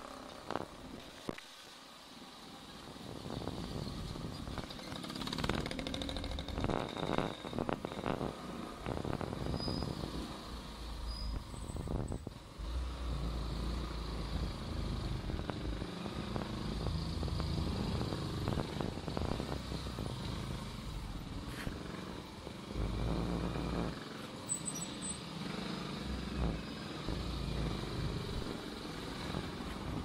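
Motorcycle engine running on the move, heard from on the bike with road and wind noise. The low rumble dips briefly about two seconds in, then rises and falls in level.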